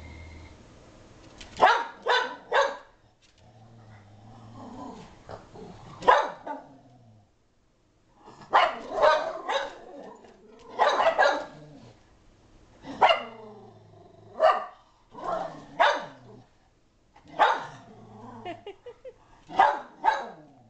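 A Shetland sheepdog barking in repeated bursts of two or three sharp barks, with short pauses between: herding barks aimed at a logo moving across a TV screen.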